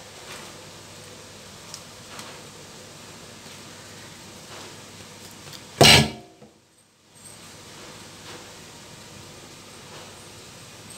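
Faint sounds of hands handling bread dough over a steady hiss, broken about six seconds in by one loud, sudden knock, after which the sound drops out for about a second.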